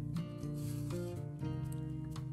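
Soft background music with held notes, and under it a faint rasp of wool yarn being drawn through jute canvas with a tapestry needle.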